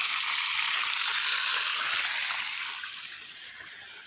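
Water gushing from an open blue plastic irrigation pipe onto garden soil: a steady rushing splash that fades away over the last two seconds.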